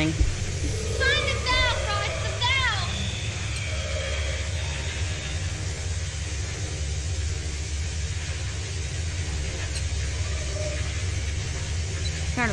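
A horror film's soundtrack: a low, steady rumbling drone. About one to three seconds in come three short, high-pitched voice sounds that bend in pitch.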